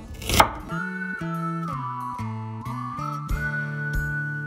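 A kitchen knife slicing through onion onto a wooden cutting board, one sharp chop about half a second in. Background music then takes over: plucked notes under a high held melody line.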